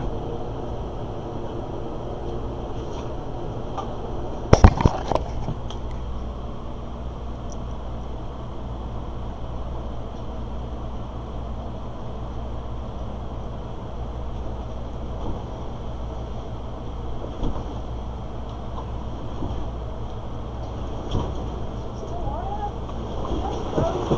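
Cat exercise wheel (One Fast Cat) turning under a walking kitten: a low, steady rumble. A cluster of loud knocks comes about five seconds in, with a few faint taps later.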